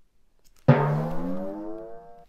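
A single struck, ringing percussion sound effect, like a low gong or 'bonk', for a head hitting a door: it hits suddenly under a second in and rings down over about a second and a half.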